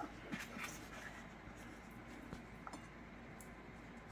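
Faint scraping of a table knife spreading butter on a split biscuit, with a few light ticks.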